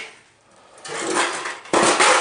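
Wrecked sheet-steel computer case being handled and pulled apart on a concrete floor: metal scraping and rattling that builds, then a loud metallic clatter near the end.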